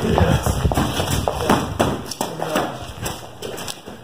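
Footsteps walking briskly on pavement, about two to three steps a second.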